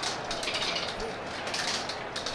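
Marbles rolling along a plastic race track: a steady rattle of many small clicks over a light hiss.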